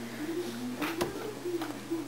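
A few light taps and knocks as a hand-carved eraser rubber stamp and ink pad are handled on a paper-covered tabletop, over a faint background tune.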